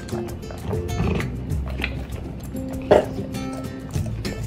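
Background music over an American Staffordshire terrier eating a dental jerky treat, with short clicks and mouth sounds and one sudden loud sound about three seconds in.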